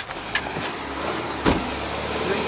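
A single thump against a car about one and a half seconds in, over a low steady rumble and rustling handling noise.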